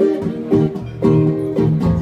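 Guitar accompaniment with no voice: chords struck about twice a second.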